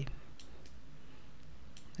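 A few faint clicks over a steady low background hiss.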